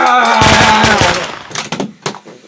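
A loud, drawn-out cry that dips slightly in pitch and then holds. Under it comes a quick run of knocks and thuds in the first second as a person is struck and slumps over. A few fainter knocks follow near the end.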